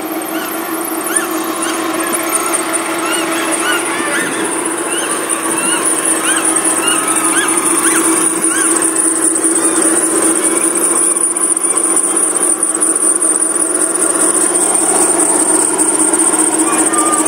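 Steady outdoor background noise: a high-pitched buzz that grows louder about six seconds in, over a steady low hum, with scattered short chirps in the first half.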